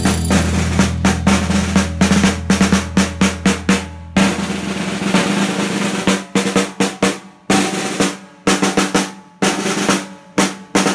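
Snare drum played with sticks: rolls and sharp single strokes in an uneven rhythm. A low held note sounds under it for about the first four seconds, then the drum carries on alone in short bursts with brief gaps.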